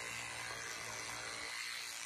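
Electric toothbrush running in the mouth while brushing teeth, a steady low buzz.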